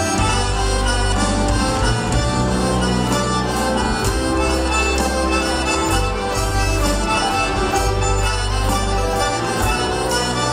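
A live band plays an instrumental break with an accordion carrying the lead over guitars, bass and drums with steady cymbal strokes.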